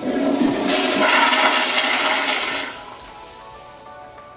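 Toilet flushing in a restroom stall: a sudden rush of water, loud for about two and a half seconds, then dying down, over soft background music.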